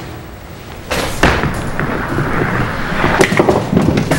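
Five-pin bowling ball landing on the lane about a second in and rolling down it, then pins clattering near the end as the ball hits them and picks up the spare.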